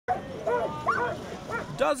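Sled dogs barking, several short pitched calls in quick succession.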